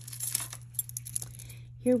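Metal chain bracelet with cross charms jingling and clinking as it is picked up and handled: a quick run of light clicks through the first second or so.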